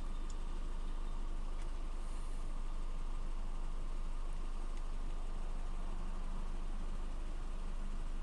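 2010 Subaru Forester's flat-four boxer engine idling steadily, heard from inside the cabin as a low, even hum.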